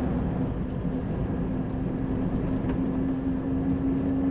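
Scania 113 truck's six-cylinder diesel engine running at a steady cruise, heard from inside the cab as a steady low hum over road and tyre noise.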